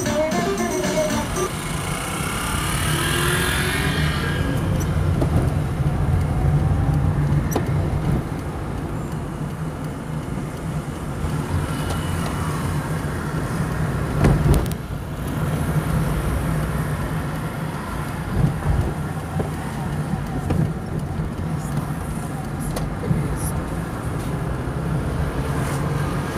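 Steady low drone of a car's engine and tyres heard from inside the cabin while driving through town, with a short bump about halfway through. Background music fades out in the first few seconds.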